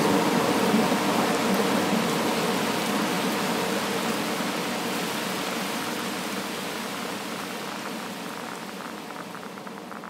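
Steady rain, fading out slowly, with faint light ticks of drops showing near the end.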